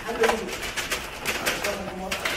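Light clicks and knocks from a clear plastic pasta container and a cardboard pasta box being handled on a kitchen counter, with a low voice at times.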